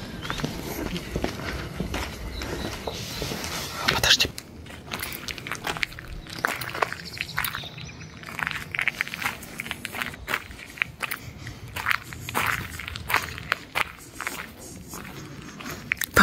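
Footsteps on gravel and stone paving at a quick walk, a run of irregular short crunches.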